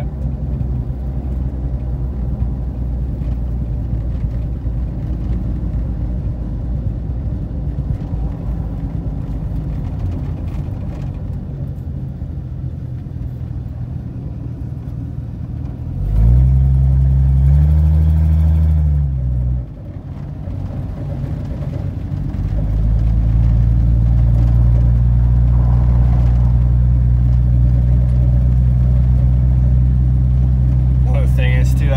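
1982 Ford F-150's 300 cubic inch (4.9 L) inline-six running under load while driving, heard from inside the cab through what is left of a largely rotted-off exhaust. A steady low drone; about halfway through, the revs climb and fall back over a few seconds. After a brief dip it settles into a louder steady drone for the rest.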